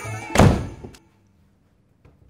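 An apartment door pushed shut with one loud thunk about half a second in, followed by a faint click.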